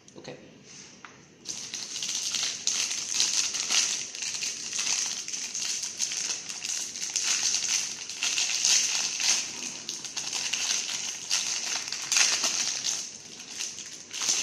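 Foil wrapper of a roll of thermal printer paper crinkling and crackling as it is handled and pulled open. The crackling starts about a second and a half in and goes on densely after that.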